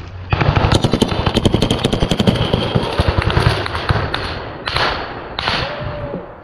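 Sustained automatic gunfire from a belt-fed machine gun, starting suddenly about a third of a second in with rapid shots, then thinning to a few short bursts in the last second and a half.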